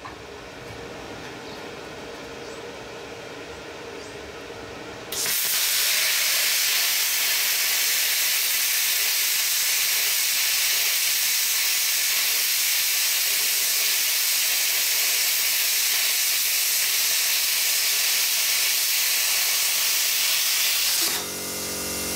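Plasma cutter's arc cutting through 5 mm steel plate on a 110-volt supply at 35 amps: a loud, steady hiss that starts suddenly about five seconds in after a quieter hum and stops shortly before the end.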